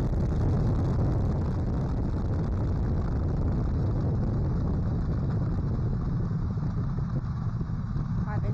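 NASA's Space Launch System rocket lifting off with its four core-stage engines and two solid rocket boosters firing: a steady, deep rumble.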